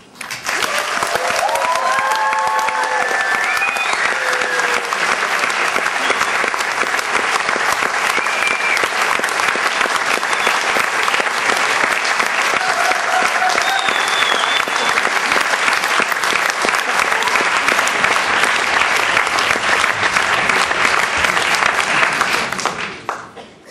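Audience applauding steadily right after a stage dance number ends, with a few shouted cheers in the first few seconds.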